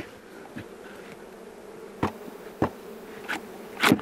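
A mass of honey bees buzzing steadily around an opened hive box, with a few light knocks in the second half.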